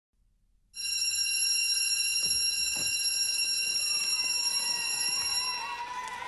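A steady high-pitched ringing tone, rich in overtones, starts abruptly about a second in, holds level, and fades near the end.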